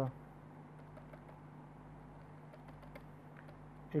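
Faint, scattered clicks and taps of a pen on a writing tablet as short dashes and arrows are drawn, over a steady low hum.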